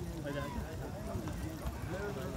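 Horses' hoofbeats on the dirt of an arena as riders move about, heard under people talking.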